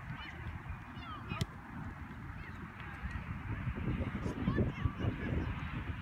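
Repeated distant honking calls over an irregular low rumble on the microphone, which grows louder after about three seconds. There is one sharp knock about a second and a half in.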